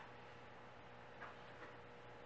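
Near silence: quiet room tone with a steady low hum and two faint, brief scuffs or taps a little over a second in.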